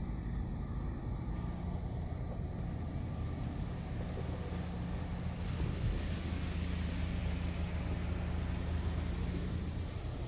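PDQ ProTouch Tandem car wash heard from inside a car's cabin: a steady low hum, with a hiss of water spray on the car building from about halfway through.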